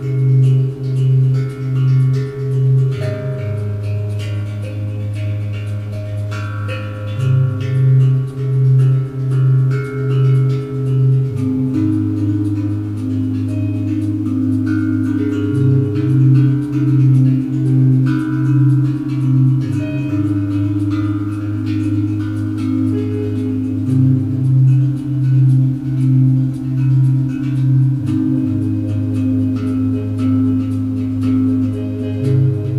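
Live electronic music: a synthesizer bass pulses about twice a second in phrases of a few seconds, alternating with a held bass note. Over it, ringing melodic notes come from a tank drum, a steel tongue drum cut from a metal tank.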